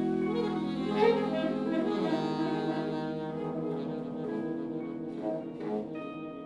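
Live small jazz group, saxophones holding long notes over double bass and drums, with an accented hit about a second in; the music gradually gets quieter.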